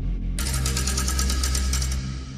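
Outro sting: a low electronic drone, joined about half a second in by a burst of harsh, rapidly stuttering digital static, a glitch sound effect, that cuts off abruptly at the end.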